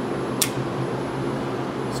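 Square D circuit breaker being reset: one sharp snap about half a second in, and a faint click near the end, as the tripped breaker is switched off and back on. A steady low equipment hum runs underneath.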